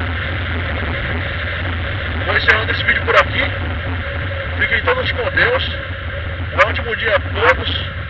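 Motorcycle engine running steadily while riding in traffic, with a low hum and wind noise on the action camera's microphone. A voice speaks briefly three times, about two and a half, five and seven seconds in.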